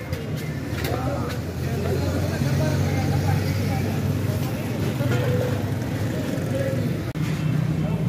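Indistinct voices over a steady low hum of street traffic and engines, with a brief dropout about seven seconds in.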